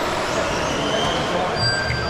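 Steady din of electric 1/10 RC buggies racing on an indoor carpet track, with thin high motor whines that come and go and a short rising whine about a second in.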